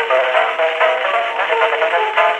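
Solo banjo playing a quick ragtime tune in rapid plucked notes, reproduced from a 1902 Edison Gold Moulded wax cylinder on an Edison Home Phonograph through its horn. The sound is thin, with no deep bass and no high treble.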